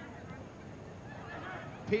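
Low, steady open-air background noise of a football ground, with a faint distant call from a voice about one and a half seconds in.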